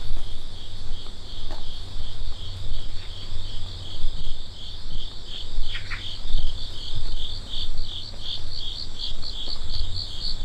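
Insects chirping in a high, steady trill that breaks into quick pulses, about four a second, in the second half. Under it are the low, regular thuds of footsteps on paving stones at a walking pace.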